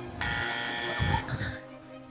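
A comic buzzer sound effect, a steady flat buzz lasting about a second, over background music, marking a wrong spelling.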